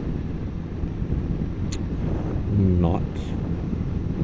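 Can-Am Spyder three-wheeler cruising at road speed: a steady low engine and road drone under wind noise on a helmet microphone, with one sharp click about halfway through.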